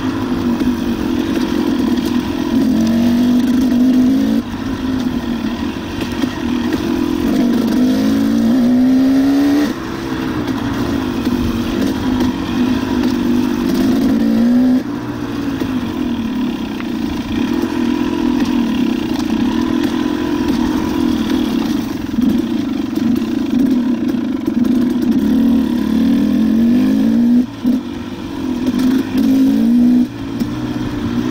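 Dirt bike engine running on a trail ride, its pitch rising in short rev surges several times and falling back as the throttle is eased.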